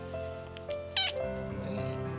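A cat gives one short meow about a second in, falling in pitch, over steady background music.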